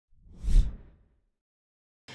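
A whoosh sound effect with a deep low rumble under it, swelling to a peak about half a second in and dying away within the first second.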